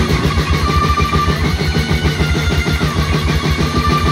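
Live death metal on distorted electric guitar and drum kit, with fast, even drumming. A long high note is held twice, near the start and again near the end.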